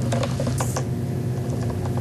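Steady low electrical hum on the lectern microphone's feed, with a few light clicks and a brief rustle about half a second in from hands handling things on the lectern.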